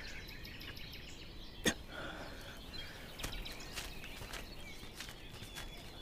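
Quiet outdoor ambience with faint bird chirps and a few scattered light ticks, and a single sharp click a little under two seconds in.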